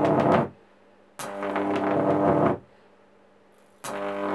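High-voltage arc from two microwave oven transformers in series with capacitors tuned to resonate at 50 Hz: a loud mains buzz with crackle. It comes in three bursts that each start suddenly: one ends about half a second in, one lasts about a second and a half, and one starts near the end.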